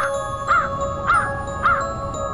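A crow cawing in a regular series, three caws a little over half a second apart, over music with ringing bell-like tones. The caws stop near the end while the music goes on.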